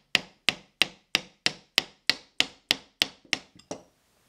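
Soft-faced mallet striking a wooden block in a steady run of light blows, about three a second, driving a Jabsco raw water pump's housing onto its shaft. The blows weaken near the end and stop.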